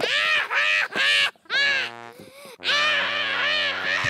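A young boy crying out loud in repeated wailing sobs. Just past halfway a steady low droning tone comes in underneath as the wails carry on.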